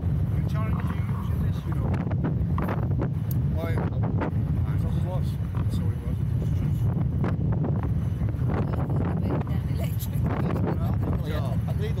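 Steady low wind buffeting on the microphone, with faint voices in the background.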